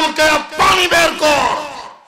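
A man preaching in a loud, raised, impassioned voice into a microphone: a run of short shouted phrases that trail off near the end.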